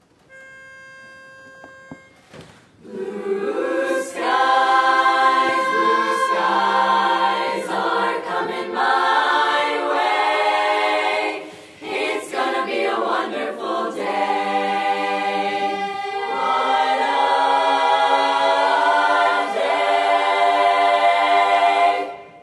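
A pitch pipe sounds a single steady note for about two seconds. Then a chorus of girls' and women's voices sings a cappella in close barbershop harmony, moving through sustained chords, with a brief break near the middle.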